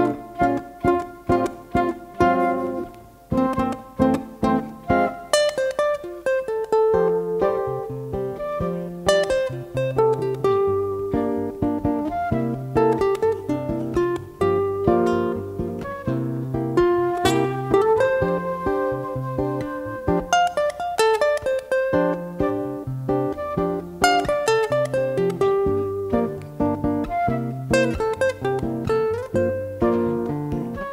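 Instrumental trio of ukulele, nylon-string classical guitar and flute playing a melodic piece: plucked chords and picked notes from the ukulele and guitar under a held flute melody. The music begins abruptly at the start.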